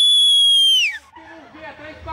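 A loud, shrill whistle held on one high pitch, sliding down and cutting off about a second in. Faint voices follow.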